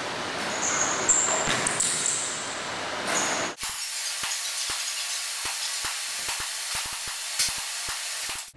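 Steady recording hiss in a gym, with a few sharp thuds in the first half, most likely the basketball landing and bouncing after a jump shot. About three and a half seconds in, the low end suddenly cuts out, leaving a thinner hiss with faint ticks.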